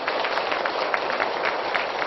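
A room of seated guests applauding, many hands clapping steadily together, for a guest who has just been introduced.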